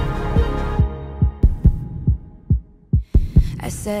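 Pop song between chorus and verse: the backing thins out and nearly drops away, leaving a low thudding pulse like a heartbeat. A woman's singing voice comes back in near the end.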